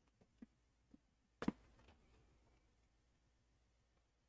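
Near silence: room tone with a few faint ticks and one short knock about a second and a half in.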